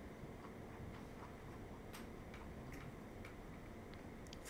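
Faint, irregular clicks of a computer mouse scroll wheel as a page is scrolled, over a low room hum.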